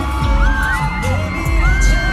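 Live pop dance track played loud over a concert sound system, with a heavy bass beat and high-pitched screaming from the crowd over it.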